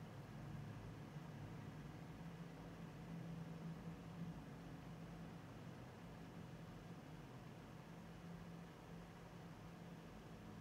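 Faint room tone: a steady low hum under a soft hiss, with no distinct events.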